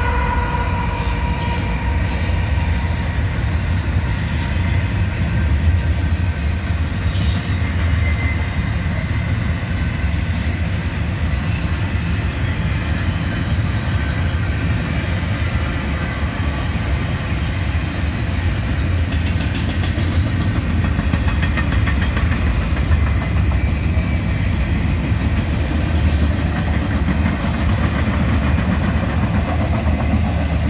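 Union Pacific freight train of double-stack container cars and autorack cars rolling past: a steady, heavy rumble of steel wheels on rail. At the start a locomotive goes by, and a whine fades out over the first couple of seconds.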